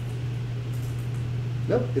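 A steady low hum runs throughout, with a man's voice saying "nope" near the end.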